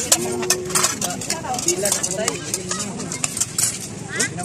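Serving spoons clinking and scraping against a steel pot and plates as food is dished out: a rapid run of sharp clicks, over background chatter of voices.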